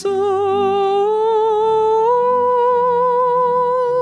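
A solo voice singing a long held note of a hymn with vibrato, stepping up to a higher held note about two seconds in, over soft low keyboard accompaniment.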